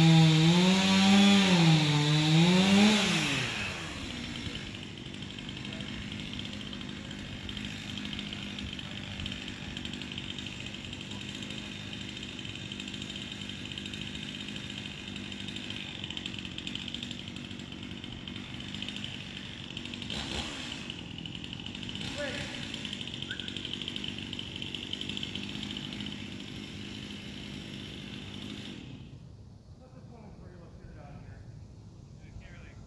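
Chainsaw cutting, its engine pitch rising and falling under load for about three seconds, then dropping away to a quieter steady idle that carries on until near the end.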